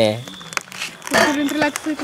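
Thin plastic crinkling and clicking as it is handled, with scattered small clicks. It comes right after a long, wailing held voice that dies away just at the start, and a short voice sounds briefly from about a second in.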